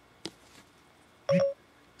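iPhone Voice Control start tone: a short electronic beep about a second and a quarter in, the signal that the phone is now listening for a spoken command. A faint click comes shortly before it.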